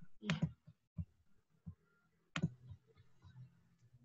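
Computer mouse clicks picked up by a call microphone: two sharp clicks about two seconds apart and a fainter one between them, over a faint low hum.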